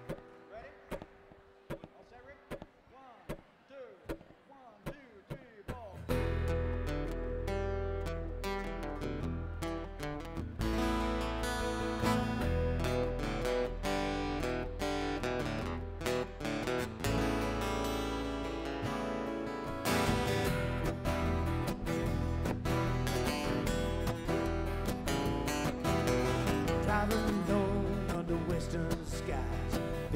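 Live acoustic country band playing an instrumental passage. The first few seconds hold only soft, evenly spaced ticks. About six seconds in, the acoustic guitars and upright bass come in, and the band gets fuller and louder about twenty seconds in.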